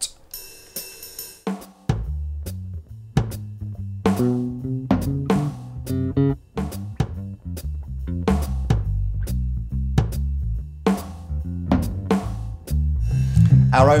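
Drum-machine beat from the amp's built-in rhythm guide, with an electric bass playing a line through a Boss Dual Cube Bass LX amp. Only a light hi-hat-like ticking is heard at first; the bass and fuller drum hits come in about two seconds in.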